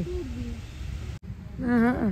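A person's voice making drawn-out, wordless sounds. A short falling tone at the start is followed, about a second and a half in, by a longer wavering hoot-like hum that falls in pitch at the end.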